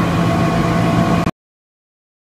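A steady background hum with a low tone and a few higher steady tones under a noise hiss. It cuts off abruptly just over a second in.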